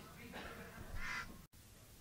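Faint, distant voices of studio chatter on an old tape transfer, broken off by a sudden brief dropout to silence about one and a half seconds in: a splice between two recordings.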